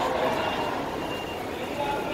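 Busy city street noise with passing traffic and background voices, and a faint electronic beep repeating every half second or so.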